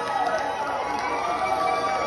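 A crowd cheering and talking over one another, many voices at once, with a few scattered claps.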